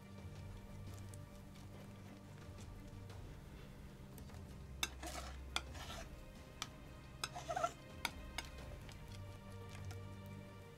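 Paint being mixed on a palette: a tool scraping and tapping through the paint, with a few sharp clicks and two short scraping strokes around the middle.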